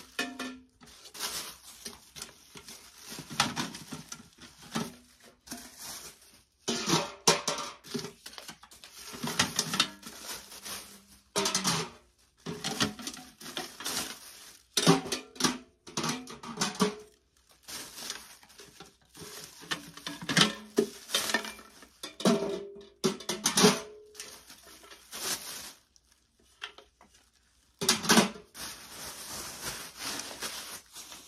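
Metal pails being pulled off a stack and handled, clanking with brief ringing, amid the crinkle of plastic wrapping being stripped off them, in irregular bursts with short pauses.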